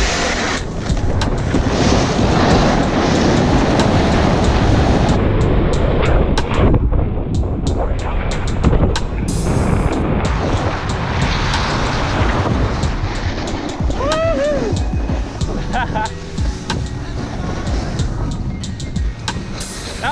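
Wind rushing over the camera microphone and a snowboard's edges scraping and chattering on the snow as the rider goes down a Big Air in-run at speed, with a short lull about six seconds in. Voices shout and laugh near the end.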